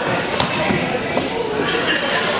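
Overlapping voices of onlookers and coaches, with a sharp smack from the karate sparring about half a second in.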